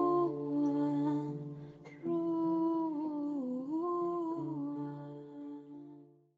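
Outro music: a melody of long held notes gliding over a steady low drone, fading out at the very end.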